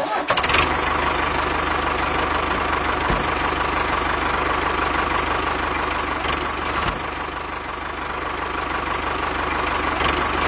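Tractor engine starting with a brief clatter, then running steadily with an even low chug.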